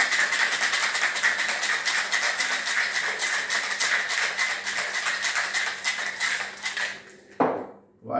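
Ice cubes rattling rapidly and evenly inside a stainless steel cobbler cocktail shaker as the drink is shaken hard. The shaking stops about seven seconds in and is followed by a single knock as the shaker is set down on the wooden counter.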